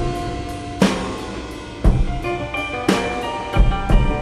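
Instrumental passage of a rock song with no vocals: heavy drum-kit hits land about once a second over sustained held instrument notes.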